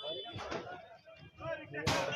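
Men's voices in a crowd, and near the end one sharp, loud bang from a roadside stall being torn down.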